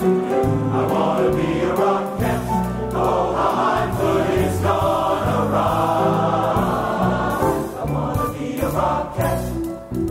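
Music: a large men's chorus singing with a live pit band, a steady, full show-tune arrangement with a running bass line.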